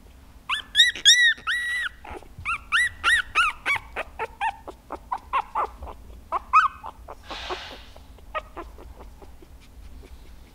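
Three-week-old Boston Terrier puppies whining and squealing in a string of short, high cries that rise and fall in pitch, coming in bursts through the first seven seconds. A brief hiss of noise follows about seven seconds in, then a few fainter whimpers.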